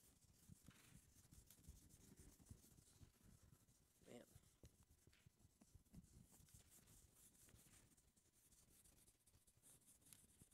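Near silence with faint rubbing of a handheld eraser wiping a whiteboard clean. A brief faint pitched sound comes about four seconds in.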